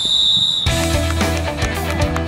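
A referee's whistle blown in one steady blast, cut off about two-thirds of a second in as loud rock music starts, with guitar and a heavy bass beat.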